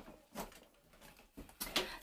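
Quiet room with a few faint, brief knocks and rustles: plastic cosmetic bottles being handled and set down on a metal wire shower shelf.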